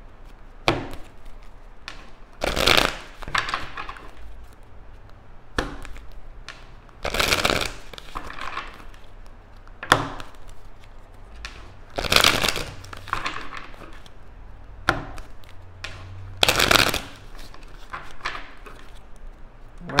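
A deck of tarot cards being shuffled by hand: short papery bursts of shuffling come every two to three seconds, with quiet pauses between.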